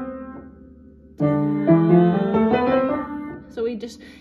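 Upright piano played with both hands together: a scale phrase of short, stepwise notes, the previous phrase dying away and a new run starting sharply about a second in, then fading out near the end.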